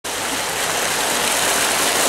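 Fountain jets splashing steadily into a shallow pond: a vertical jet and an arcing spout falling onto the water surface.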